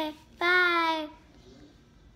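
A child's voice, a brief vocal sound at the start and then one held sung note about half a second long, falling slightly in pitch.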